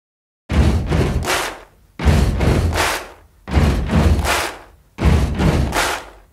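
Four loud, evenly spaced whooshing bursts with a deep low end, each fading over about a second, one every second and a half: an edited-in intro sound effect.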